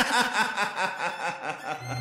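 A man laughing, a quick run of pulsing chuckles that trails off near the end as low music comes in.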